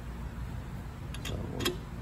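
Two or three short metallic clicks about a second and a half in, the last the loudest, as a steel pedal wrench is fitted onto an axle nut on a bicycle fork, over a steady low hum.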